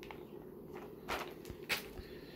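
Clear plastic comic slab cases being handled and swapped, with two brief knocks about a second in and near the end, over a low steady hum.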